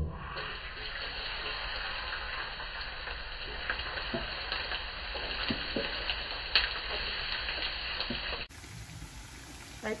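Minced garlic sizzling in hot cooking oil in a steel wok, a steady frying hiss with scattered sharp pops. About eight and a half seconds in it drops abruptly to a quieter cooking sound.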